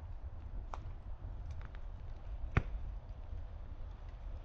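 Outdoor ambience: a steady low rumble of wind on the microphone, broken by four sharp clicks or ticks, the loudest a little past halfway.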